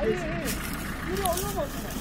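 A tractor engine idling with a steady low rumble, under faint voices talking in the background.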